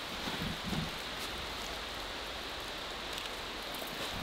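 Steady, even hiss of wet snow falling through the forest, sounding like light rain.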